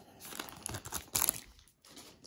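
Foil wrapper of a trading card pack crinkling as it is torn open by hand: irregular crackles, sharpest about a second in, then fading near the end.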